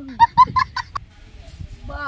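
Domestic fowl calling: about five short, quick calls in the first second, with a single click just after them.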